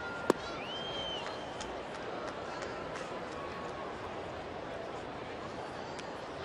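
Ballpark crowd hum and chatter, with a single sharp pop of a pitched baseball into the catcher's mitt just after the start. A couple of high, briefly held whistle-like tones rise from the stands in the first second or so.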